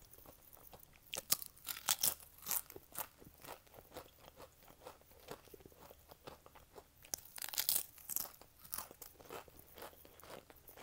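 Close-miked crunching and chewing of wavy Pringles potato crisps, with two loud spells of crunching, about a second in and around seven seconds in, and quieter chewing between.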